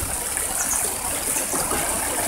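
Majaceite river water running steadily over stones and small cascades, a continuous rushing hiss.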